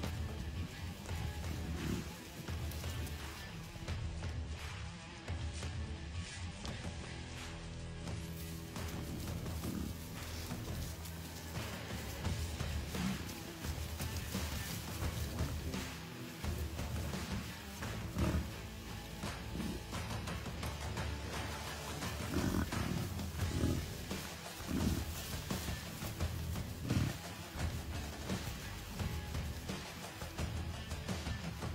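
Music playing throughout, with the low grunts of American bison heard now and then under it, more often in the second half.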